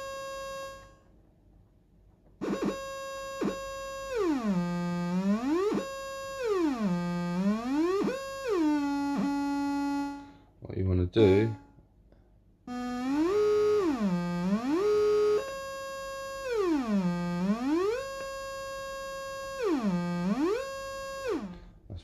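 Arturia MicroFreak synthesizer holding a bright, buzzy note whose pitch swoops down well over an octave and back up over and over, each swoop about a second long. The swoops come from its cycling envelope, looping and routed to pitch. The note stops briefly near the start and again about halfway through.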